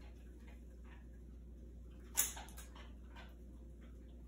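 Quiet handling of ribbon, sticky tape and a plastic cup: a few faint taps and one short, sharp crackle about two seconds in as tape is handled and pressed onto the cup.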